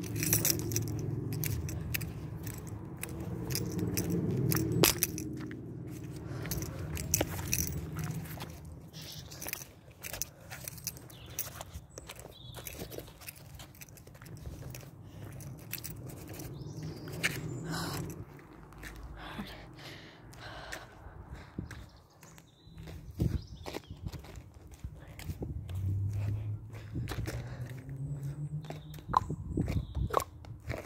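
Footsteps of a person walking on pavement and grass, heard as irregular clicks and knocks over a low rumble, louder in the first few seconds and again near the end.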